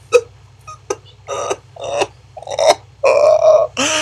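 A man's wordless vocal noises in exasperation: a few short sounds, then longer drawn-out ones that grow louder in the last second or so.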